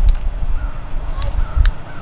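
Outdoor wind buffeting the microphone as a fluctuating low rumble, with a few sharp clicks and a brief spoken "What?".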